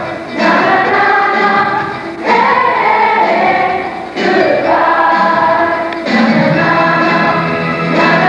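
A large ensemble of high school singers singing together as a chorus, in sustained phrases of about two seconds each with brief breaths between them.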